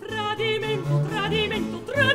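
Operatic mezzo-soprano singing a Baroque aria, a new phrase beginning just after a brief breath and moving through quick, ornamented notes with vibrato, accompanied by harpsichord and violone (a large bass viol) holding low notes beneath.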